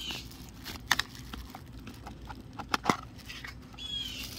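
Light clicks and knocks from handling a small orange plastic case of folding metal utensils: one about a second in and two close together near three seconds.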